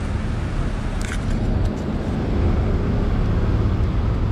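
Steady low rumble of city road traffic, with a brief click about a second in.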